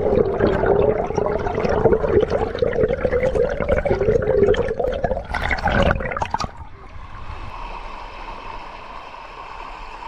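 Stream water heard from a microphone underwater: a loud, muffled bubbling and gurgling of current over a pebble bed. About six and a half seconds in it gives way to a quieter, steady rush of a small cascade pouring into a pool, heard from above the water.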